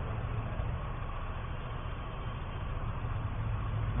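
Steady low hum and rumble with a faint even hiss: the background noise of a low-quality classroom lecture recording, heard during a pause in the dictation.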